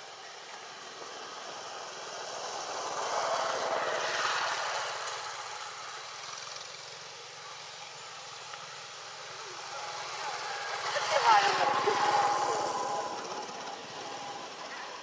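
Two motor vehicles passing by in turn, each swelling up and fading away over a few seconds, the second one louder, about eleven seconds in.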